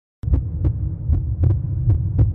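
A loud low throbbing hum that starts suddenly a moment in, with light ticks every quarter second or so.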